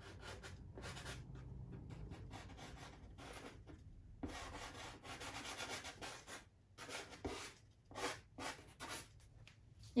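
Soft pastel stick rubbed across Pastelmat pastel paper in short scratchy strokes as colour is laid into the sky. The rubbing is faint and nearly continuous at first, then comes in separate quick strokes with short pauses in the second half.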